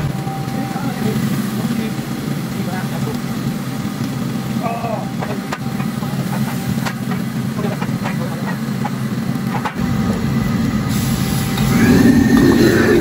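Steady low rush of a commercial gas wok burner, with a metal ladle scraping and knocking against a carbon-steel wok as sliced meat and cabbage are stir-fried. Near the end the sizzling grows louder as sauce goes into the hot wok.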